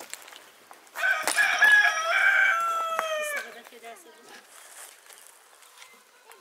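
A rooster crowing once, about a second in. The crow is one long, loud call of about two and a half seconds that drops in pitch at the end.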